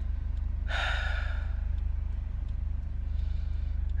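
A woman lets out one long, breathy sigh about a second in, over the steady low hum of a car's cabin.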